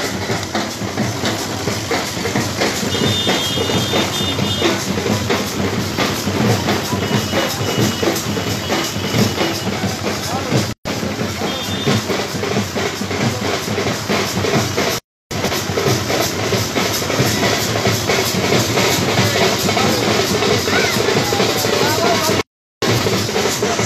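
Dhol drums beating in a dense, noisy street procession, with the voices of a large crowd mixed in. The sound cuts out briefly twice partway through.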